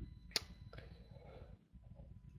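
A faint low hum with a single sharp click about a third of a second in.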